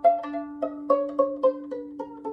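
Violin played pizzicato: a run of about eight plucked notes stepping down in pitch as the stopping finger moves back toward the pegs, with a lower string ringing steadily underneath.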